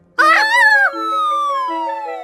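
Cartoon sound effects: a short wavering squeaky vocalisation, then a long whistle that slides steadily down in pitch, over soft background music notes.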